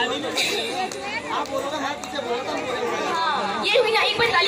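Several people talking at once: overlapping chatter of voices, with no music playing.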